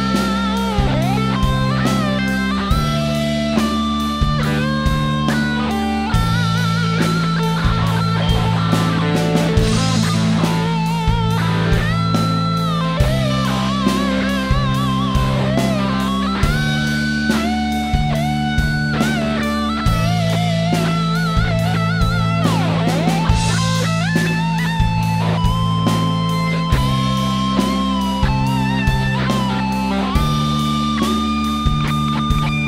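Electric guitar improvising a lead line in A minor pentatonic with an added major sixth (A, C, D, E, F♯), with vibrato and bent notes. It plays over a backing track of low bass notes and a steady beat.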